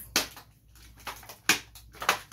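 Toy packaging crinkling and rustling as it is handled and pulled from a box, with a few sharp crackles, the loudest about one and a half seconds in.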